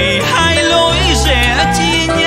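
Live Vietnamese tân cổ giao duyên song (modern ballad mixed with cải lương): a male voice sings sliding, bending melodic lines over the band's steady bass accompaniment.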